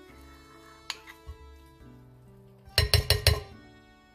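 A metal spoon tapping against a bowl about four times in quick succession, knocking cottage cheese off into the mixing bowl, with a lighter clink about a second in. Soft background music plays throughout.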